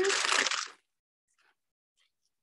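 A clear plastic disposable piping bag filled with buttercream crinkling as it is gripped and handled, a brief crackle in the first second.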